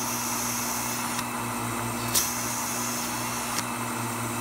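Astro envelope feeder's vacuum pump running with a steady hum and hiss, broken by a few brief sharp hisses of air about every second or so.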